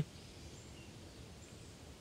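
Faint outdoor ambience: a low, steady background hiss with a few faint, brief high bird chirps.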